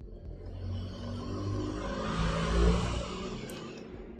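A motor vehicle passing by, its engine and road noise building to a peak about two and a half seconds in and then fading away.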